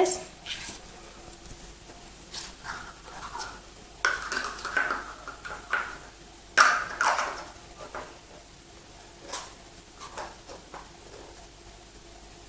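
Hollow plastic cups picked up and set down and stacked on a wooden table: a scatter of light clacks and knocks, the loudest about seven seconds in.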